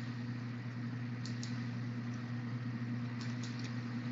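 Steady low hum and hiss from an open microphone on an online voice-chat line, with a few faint clicks about a second in and again past three seconds.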